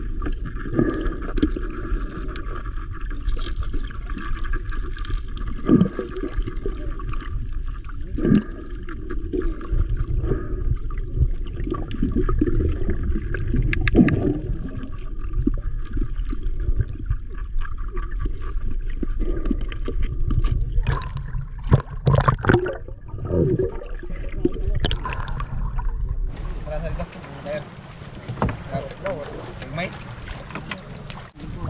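Muffled, rumbling sound of a camera's microphone underwater in shallow water, with irregular knocks and thumps as the net and the men move nearby. Near the end it switches to open-air sound of water sloshing around the boat.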